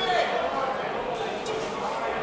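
Ringside voices calling out over a steady hum of crowd chatter in a hall, with one brief sharp tap about one and a half seconds in.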